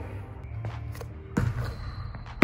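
Background music, with a single thud about a second and a half in: a basketball landing on the hardwood court floor after a made shot.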